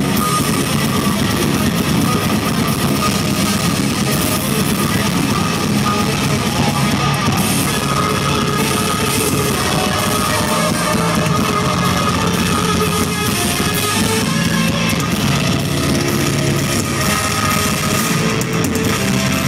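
A blackened death metal band playing live: heavily distorted electric guitars over a drum kit, dense and loud without a break, heard from within the crowd.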